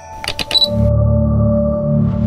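Logo sting sound design: a quick run of camera-shutter-like clicks about a quarter second in, then a low, steady ambient drone with music over it.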